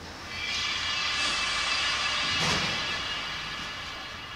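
A noisy whoosh-like swell that builds over about a second, holds, and fades near the end, with a brief hit about two and a half seconds in.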